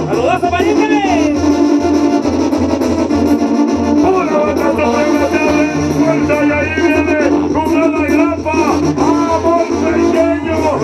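Brass band music playing, with horn melody lines over a steady, evenly pulsing bass.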